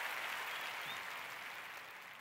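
A soft, steady hiss that fades gradually toward the end.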